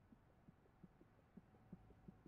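Near silence, with faint low thumps repeating about three times a second.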